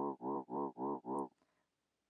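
A clavinet-sampled synth bass note played in Ableton Simpler, held and pulsing about four times a second under LFO modulation, with the LFO here routed to pan. The note stops a little past halfway through.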